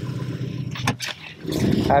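Pickup truck engine idling steadily while still cold and warming up, with a couple of sharp knocks about a second in; the engine sounds louder over the last half second.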